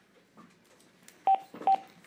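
Two short electronic beeps of the same pitch, about half a second apart, from a teleconference phone line, the signal of a caller hanging up and leaving the call.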